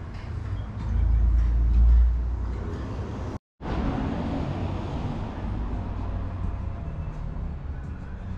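Triumph café-racer motorcycle engine idling steadily through an aftermarket Pro-Race silencer. It swells louder about a second in and settles back by about three seconds, and the sound drops out for a moment near the middle.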